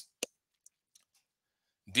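One short, sharp click just after the start, then a few faint ticks and near silence; a narrating voice starts again near the end.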